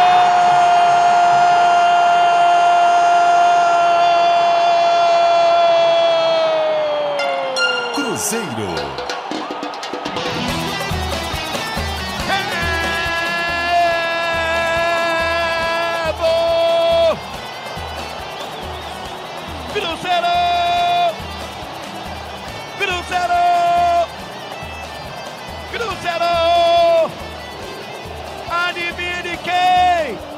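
A radio football narrator's drawn-out goal cry, one held note for about seven seconds that then slides down and breaks off around eight seconds in. After that, music with a steady beat, with a voice holding drawn-out notes every few seconds.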